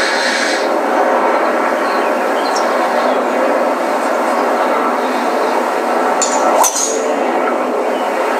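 Steady background hiss, then about six and a half seconds in, one sharp crack as a driver's clubhead strikes a golf ball off the tee.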